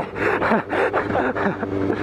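Sport motorcycle ridden at low speed, its engine running steadily under heavy wind noise on the helmet-mounted camera, with breathless laughing mixed in.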